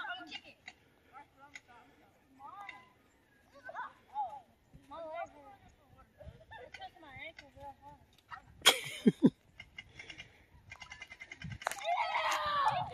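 Faint children's voices calling and shouting across an open yard. About two-thirds of the way in there is one brief, loud bump close to the microphone.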